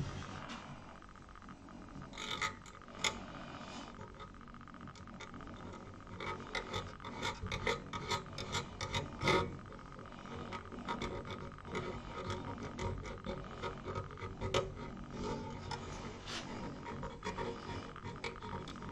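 Light handling noises from a laser mirror mount being adjusted by hand: scattered small metallic clicks and rubbing as its spring-loaded adjustment screws are worked and tensioned. A faint steady tone runs underneath.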